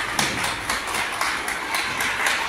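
A small group of people clapping, a quick run of scattered, uneven claps.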